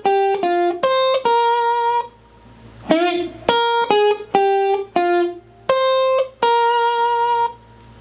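Electric guitar playing a rock and roll lead lick note by note: short single notes, then after a brief pause a bent note on the G string about three seconds in, followed by a run of single notes on the B string.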